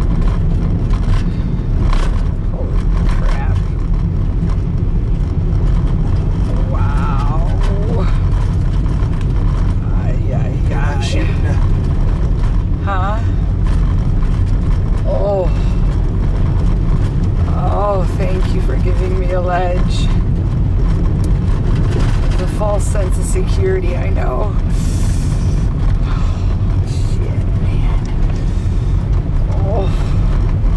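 Campervan driving on a gravel road, heard from inside the cab: a loud, steady low rumble of engine and tyres. Short voices break in several times.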